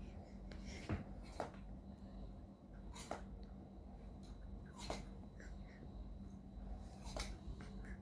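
Small plastic dominoes clicking against each other as they are picked up and stacked one at a time: about five light, separate clicks spread over several seconds, over a faint steady hum.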